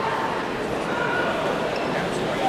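Indistinct voices and crowd chatter in a large, echoing sports hall, with scattered shouts rising above the general murmur.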